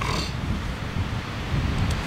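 Wind buffeting the microphone: a low, uneven rumble, with a short rustle right at the start.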